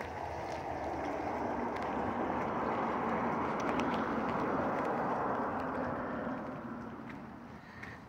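Steady rush of running water from a backyard koi pond's circulation, with the air stones switched off, fading away near the end.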